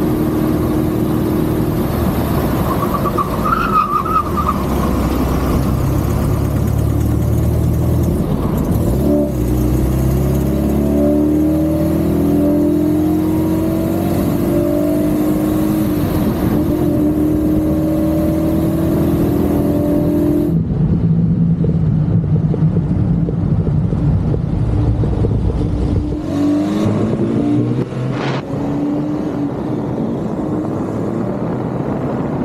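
1966 MGB's four-cylinder engine running under way, its note climbing as it accelerates. The sound changes abruptly about two-thirds of the way through and again near the end.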